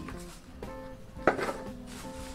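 Background music with steady held notes, and about halfway through a sharp, brief crackle of dry leaves being tipped into a plant pot.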